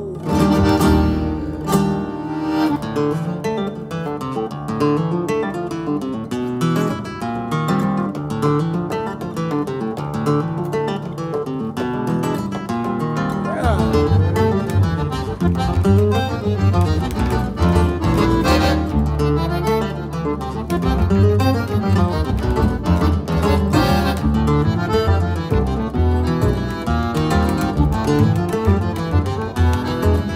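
Instrumental choro played live by a trio of nylon-string classical guitar, accordion and double bass, with the guitar leading. About halfway through, the bass line comes in much fuller underneath.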